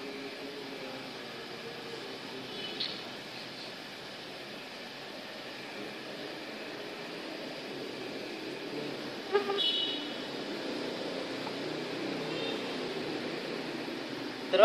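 Steady background traffic noise with two brief horn toots, a faint one about three seconds in and a louder one near ten seconds in.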